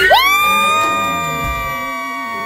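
Singing voices holding one long high note, steady in pitch, with a faint crowd cheering beneath.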